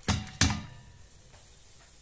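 Two knocks, about a third of a second apart, of a plastic colander tapped against a stainless steel pot to empty the last of the rinsed fava into it.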